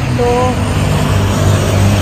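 Road traffic on a busy street: a steady low rumble of passing vehicles that grows stronger after about a second.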